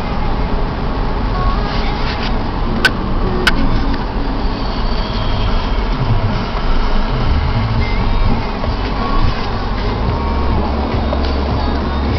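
Steady engine and road noise inside a moving car's cabin, with two sharp clicks about three seconds in.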